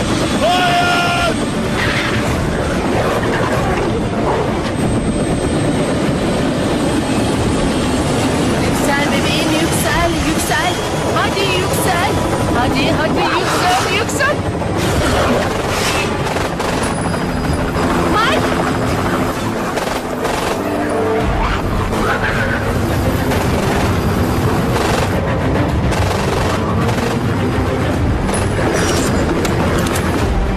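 Loud, dense action-film soundtrack: music mixed with sound effects and voices, without a let-up.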